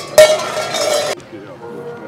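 A loud, bright metallic clanging burst about a second long that cuts off abruptly.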